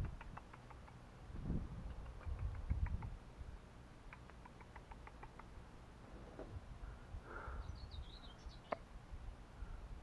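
Faint runs of light ticks, then a brief high house sparrow chirp about three quarters of the way in, followed by a single sharp click.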